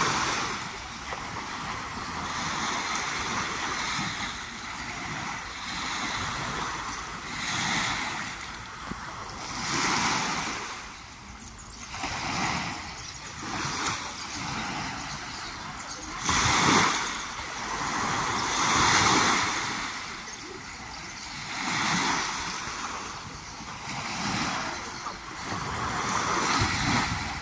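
Small lake waves breaking and washing up on the shore, in swells every two to three seconds.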